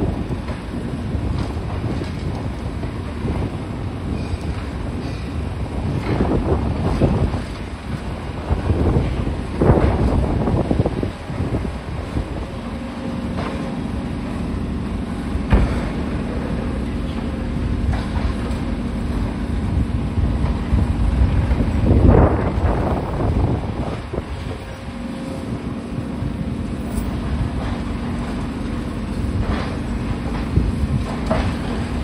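Tracked demolition excavator working on a concrete building: its diesel engine runs steadily under load, taking on a steady droning note from a little before halfway, while the attachment crunches concrete and debris crashes down about four times.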